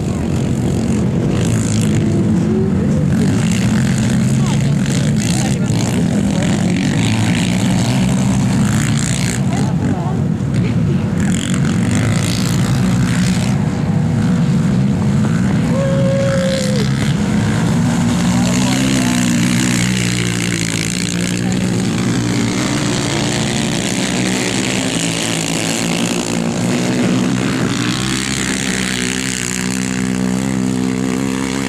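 Racing quad ATV engines running hard, their pitch rising and falling with the throttle through the turns.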